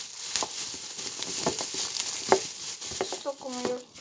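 Plastic bags crinkling and rustling as they are handled, with scattered sharp crackles.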